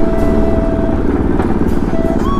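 Bajaj Pulsar NS200's single-cylinder engine running at low road speed while riding. A steady held tone sits over it for about the first second.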